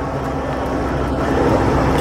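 Steady outdoor background noise with a low rumble and a faint steady hum, the kind of din a street crowd and nearby vehicles make.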